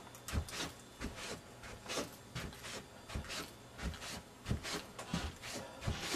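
Soft, irregular thumps and rubbing, about two a second, from a person moving about with a handheld camcorder.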